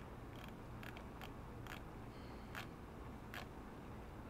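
Faint light clicks and ticks, about seven spread unevenly over a few seconds, over a low steady room hum.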